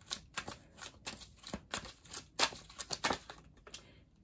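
A tarot deck being shuffled by hand: a quick, irregular run of card flicks and slaps.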